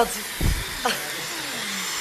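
Handheld hair dryer blowing steadily on wet hair, a constant rushing hiss with a faint high motor whine. A low thump about half a second in.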